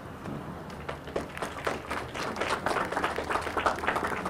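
Small audience applauding, a scattered patter of claps that thickens about a second in.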